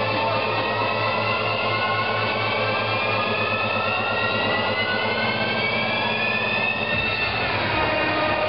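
Electronic dance music build-up: a synth riser, several tones gliding slowly upward together over a steady low hum, breaking off about seven seconds in.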